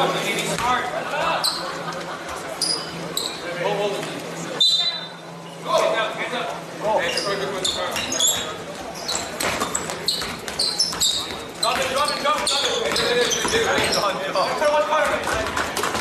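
Basketball game sounds in a gym: a ball bouncing on the hardwood court and sneakers squeaking, over spectators and players talking and calling out, echoing in the hall.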